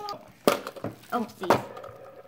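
Two sharp knocks about a second apart, the first about half a second in and the second near one and a half seconds, with a child's short "Oh!" between them.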